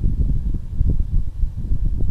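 Wind buffeting the microphone: an irregular low rumble that rises and falls, with nothing higher in pitch above it.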